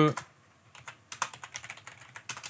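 Typing on a computer keyboard: a run of quick, irregular key clicks starting about a second in.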